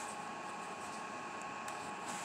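Steady background hiss with a faint constant hum: room tone, with no distinct sound event.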